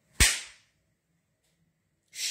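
A single loud, sharp crack about a fifth of a second in, dying away within half a second.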